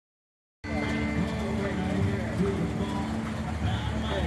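Outdoor car-show sound cutting in suddenly about half a second in: a 1955 Ford Victoria running at low speed as it rolls past, with onlookers' voices and background music.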